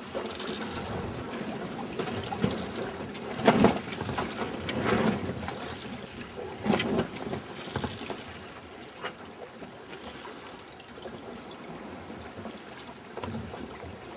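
Water washing and sloshing against a small sailboat's hull as it runs slowly downwind in an old swell, with a few louder surges of wash, the loudest a little over three seconds in.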